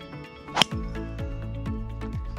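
Driver striking a golf ball off the tee: a single sharp crack about half a second in, over background music.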